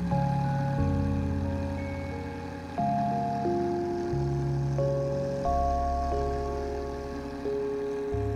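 Instrumental background music: slow, sustained chords that change every second or two.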